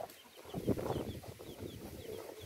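Faint bird calls in the background: a string of short, high, slightly falling chirps repeating several times a second, with some faint lower clucking in the first half.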